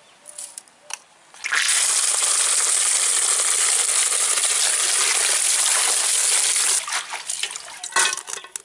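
A stream of water gushing into a metal basin of amaranth greens, starting about a second and a half in, running steadily, then cutting off abruptly near the end. A few short knocks and splashes follow as the wet greens are handled.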